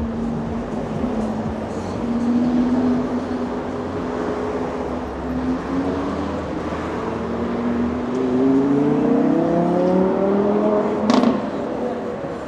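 City street traffic: a vehicle's steady hum, then a rise in pitch over the last few seconds as it pulls away and accelerates. A single sharp knock sounds near the end.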